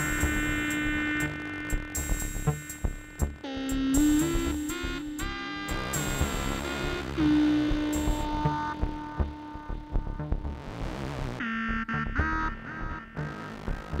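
Improvised electronic music from several analog synthesizers played live: held tones with rich overtones over irregular low thumps. A quick run of stepping notes comes about four seconds in, and a swell of hiss comes about ten seconds in before new held tones.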